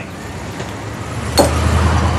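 Low rumble in a film clip's soundtrack played over room speakers, swelling about a second in, with a single sharp click partway through.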